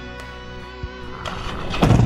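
Background music with a held chord. Near the end, the 2013 Harley-Davidson Road Glide Ultra's 103 cubic inch Twin Cam V-twin starts up loudly, its rumble coming through a Vance & Hines X-pipe header and slip-on mufflers.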